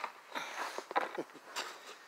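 Several short scuffs, creaks and knocks of someone shifting about at ground level while handling a phone camera.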